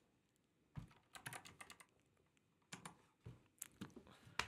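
Faint clicks of typing on a computer keyboard, in scattered strokes: a short run about a second in and a few more near the end.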